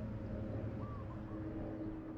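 Outdoor ambience with a steady low hum and a couple of short bird chirps about a second in.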